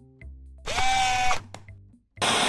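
Background music with a low, steady bass, and a loud buzzing transition sound effect about two-thirds of a second in: a steady tone over a noisy rasp, lasting under a second.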